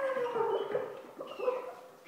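Free-improvised extended-technique voice with live electronics: a wavering pitched tone that glides down over about the first second, then a shorter rising glide, fading toward the end.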